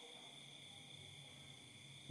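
Near silence: faint steady background hiss with a thin high tone.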